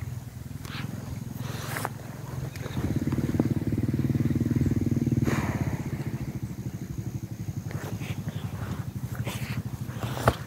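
A small motorbike engine running, louder from about three seconds in until just past five seconds, then easing off. A few short knocks come through over it.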